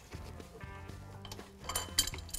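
Light metallic clinks of a wrench on the fan clutch nut as the nut is loosened, grouped near the end, over soft background music.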